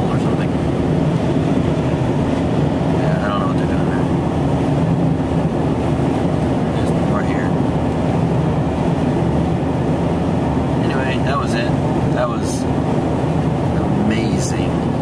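Steady car engine and road noise heard from inside the cabin while driving along a highway, a low, even rumble.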